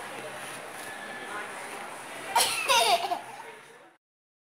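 A toddler's short, high-pitched laugh about two and a half seconds in, over steady background noise. The sound fades out near the end.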